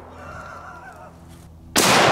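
A single AK-47 rifle shot (7.62x39 mm full metal jacket): a sharp crack near the end with a long echoing decay.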